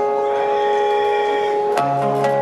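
Solo amplified acoustic-electric guitar: a chord is struck and rings on for most of two seconds, then fresh notes are plucked near the end.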